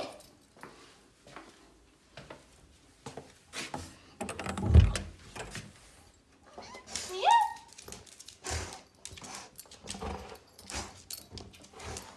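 A Labrador moving about at close range, with scattered light clicks and taps. There is a low thump about five seconds in, and a short rising whimper about seven seconds in.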